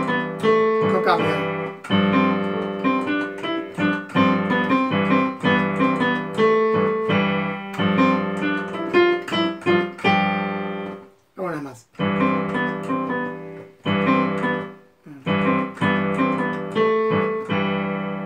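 Yamaha digital piano played with both hands in a repeating chord pattern. The playing breaks off briefly twice, about two-thirds of the way through and again a few seconds later.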